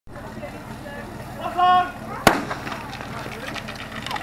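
A single shouted starting command, then one sharp starting-pistol shot about two seconds in that sends a firefighting-sport team off on its fire-attack run, over steady spectator chatter.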